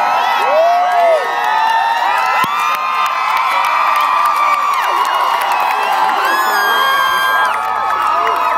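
A large concert crowd screaming, whooping and cheering, a dense wall of many overlapping high voices, as the show's intro begins. A low steady hum comes in near the end.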